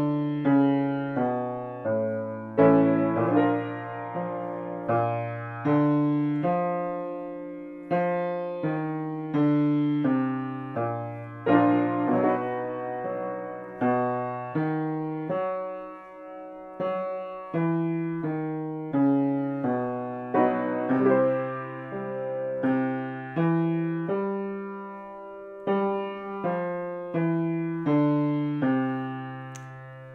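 Grand piano playing the accompaniment to a vocal warm-up exercise: single notes and chords struck about once or twice a second, each ringing and dying away before the next.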